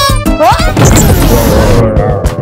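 Cartoon crash sound effect over background music: a short rising glide, then a loud crash that trails off over about a second.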